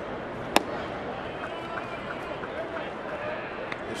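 A pitched baseball popping into the catcher's mitt: one sharp crack about half a second in, over the steady murmur of the ballpark crowd.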